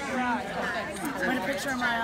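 Several people talking at once: indistinct party chatter of mostly women's voices.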